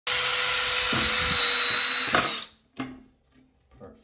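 Cordless drill running at steady speed, boring a hole into the rim of a toilet bowl, with a steady high whine over the noise of the bit cutting. It stops about two and a half seconds in, followed by a light knock.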